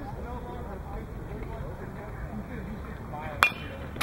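A baseball bat striking a pitched ball: a single sharp crack about three and a half seconds in, with faint voices of people at the field underneath.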